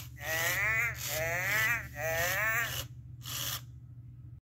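A 1998 Tiger Electronics Gen 1 Furby talking in its electronic voice: three short sing-song calls, each rising and then falling in pitch, followed by a brief burst of hiss from its speaker. A steady low hum runs beneath.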